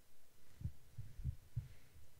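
Several soft, low thumps at irregular intervals.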